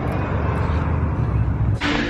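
Steady low rumble of car road and engine noise heard from inside a moving car. It cuts off sharply just before the end.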